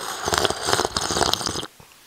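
A man slurping coffee from a mug: one long, bubbly slurp that cuts off sharply near the end.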